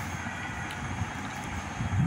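Steady background noise: a low rumble with an even hiss over it and no distinct events.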